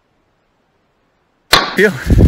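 Dead silence, broken about a second and a half in by a sudden loud burst of noise, then a spoken word.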